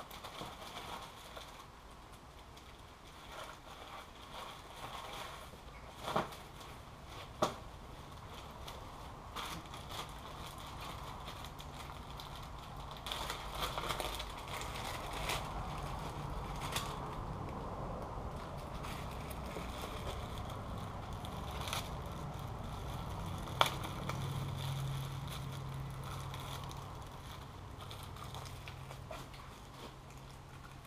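Parts being handled and rummaged through: irregular rustling and crackling with a few sharp clicks. A low steady hum comes in during the second half.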